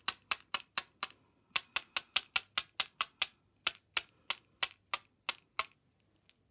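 A clear plastic ruler rapped repeatedly against a white Uni Posca paint pen, about four or five sharp taps a second, to spatter white paint dots onto a card. There is a short pause about a second in, and the tapping stops near the end.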